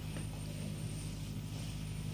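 Steady low hum with a faint hiss underneath: the background noise of an old recording, with no voice in it.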